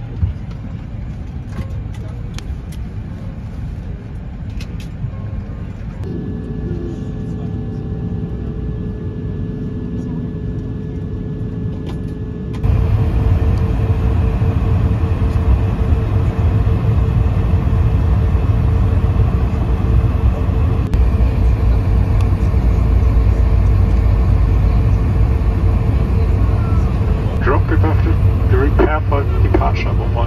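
Airbus A220 cabin noise with the aircraft on the ground: a steady low rumble with a constant hum. About twelve seconds in it steps up abruptly to a much louder rumble while the plane taxis.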